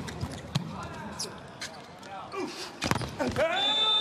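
Volleyball being struck during a rally: several sharp hand-on-ball hits about a second apart over crowd noise, with shouting rising near the end.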